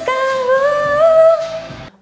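A woman sings one long held vowel as a vocal exercise, with her mouth opened wide as coached. The note slides slowly upward in pitch, then fades out just before the end.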